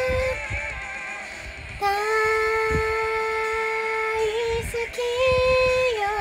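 A woman singing a Japanese pop song, holding one note for about two seconds in the middle.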